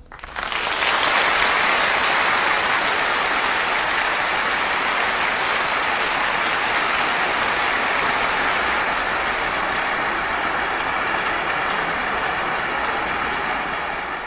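A steady, even rushing noise with no tune or voice in it. It starts abruptly and stops as a song begins.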